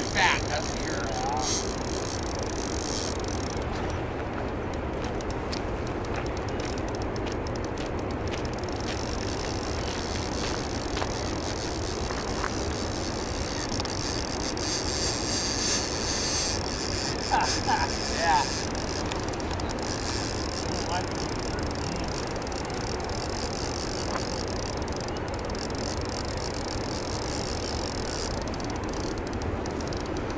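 Steady rushing noise of turbulent water churning below a river dam, with a few short high chirps about a second in and again around seventeen seconds in.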